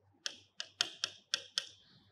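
Marker pen writing on a whiteboard: a quick run of about seven short, sharp strokes, the last one slightly drawn out.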